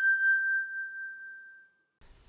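A single electronic ding, the app's confirmation sound as an image project is duplicated: one clear, bell-like tone that fades out over about a second and a half.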